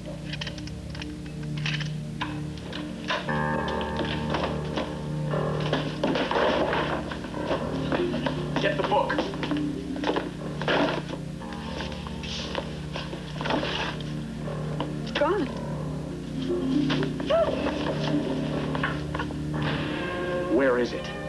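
TV drama soundtrack: music with indistinct voices and scattered knocks and thuds, plus a few short gliding electronic-sounding tones near the end.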